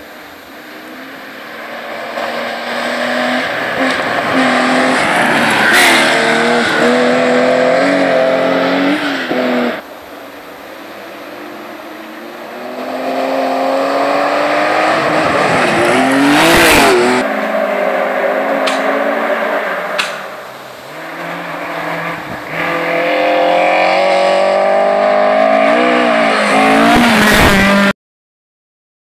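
Historic rally cars driven flat out along a gravel special stage, their engines revving up and down through the gears as they approach. Loud passes come one after another, the loudest with a sharp drop in pitch as the car goes by close.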